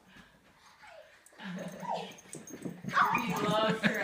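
A dog whimpering, mixed with people's voices that grow louder about three seconds in.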